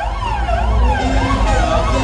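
Dub siren effect, its pitch sweeping up and down about twice a second, over the deep bass of a dub sound system.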